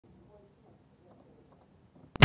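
Near silence, with two faint clicks about a second and a second and a half in.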